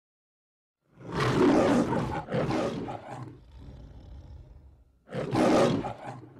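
Three loud, rough roars. The first starts about a second in and lasts about a second, the second follows straight after and trails off, and the third comes near the end.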